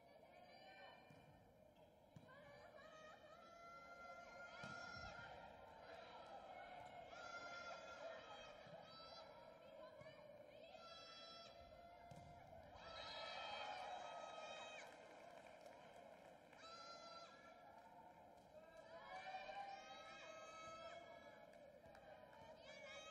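Faint arena crowd of volleyball spectators chanting and shouting, a rising call repeated about every two seconds.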